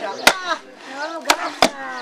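Wooden mallets striking the backs of splitting blades driven into log sections, three sharp knocks as wood is split by hand: two close together near the end.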